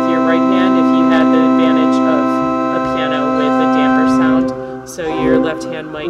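Church organ holding a sustained chord on the manuals for about four seconds, then moving to new chords near the end.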